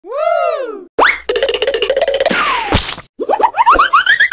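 Cartoon sound effects in quick succession. First a boing that rises and falls, then a fast fluttering rattle that ends in a short crash. After a brief pause comes a run of short boings climbing steadily in pitch.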